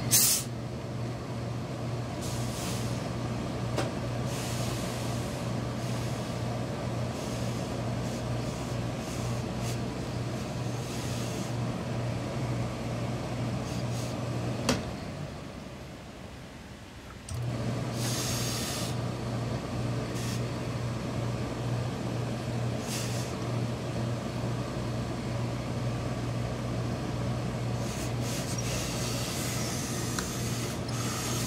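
A steady machine hum from the pressing equipment stops about halfway through for roughly two seconds, then starts again. Short hisses of steam from an industrial steam iron come at the start, just after the hum returns, and near the end.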